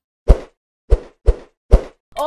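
Four short, punchy thud sound effects, about half a second apart, with silence between them, accompanying an animated title-card transition.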